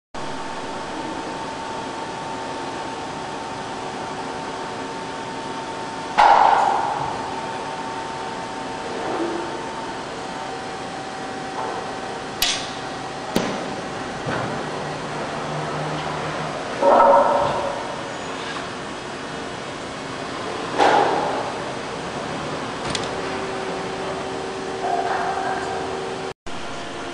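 Corrugated single facer machine running with a steady hum and whine, broken by three loud knocks about 6, 17 and 21 seconds in and a few smaller knocks and short clicks.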